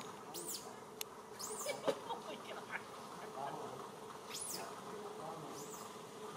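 Steady insect buzzing in the outdoor background, with a few short, high chirps scattered through it and a couple of sharp clicks in the first two seconds.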